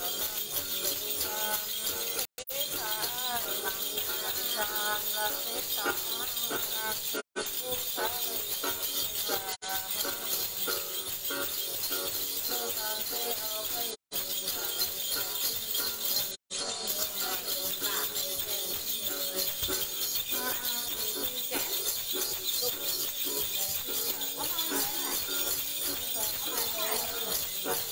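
A female Tày-Nùng Then singer chanting a ritual Then song, accompanied by the long-necked đàn tính lute and the steady shaking of a bunch of small jingle bells. The sound drops out for an instant a few times.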